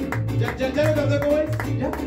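Mariachi band playing a lively tune: vihuela strumming over bass notes that come about twice a second, with a held melody line above.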